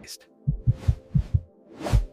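Sound-effect heartbeat: low, short thumps in quick pairs, with an airy whoosh swelling near the end, over faint background music.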